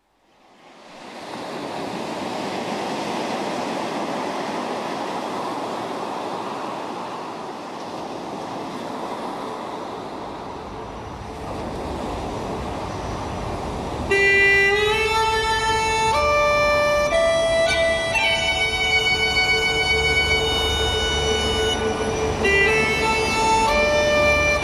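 A steady rushing noise swells in over the first second or two and runs on; about 14 s in, uilleann pipes begin, a held note with a slow melody moving above it.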